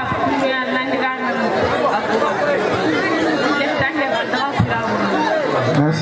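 Speech: voices talking over one another, with crowd chatter, in a large hall.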